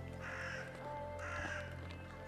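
A bird calling twice, faint, with the calls about a second apart.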